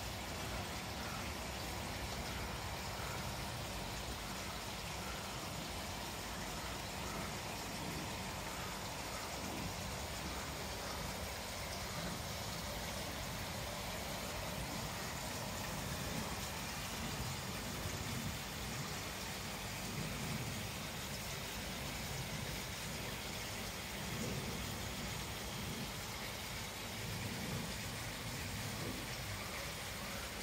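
Steady splashing of water falling from a koi pond's filter outlet into the pond.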